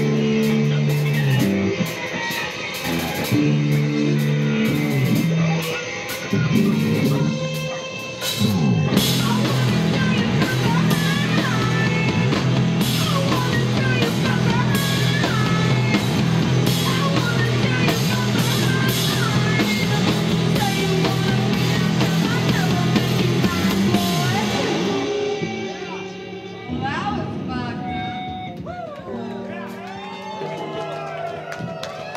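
Live rock band playing loud: electric guitar, drum kit and sung vocals through a club PA. The music drops away about 25 seconds in, leaving voices and crowd noise.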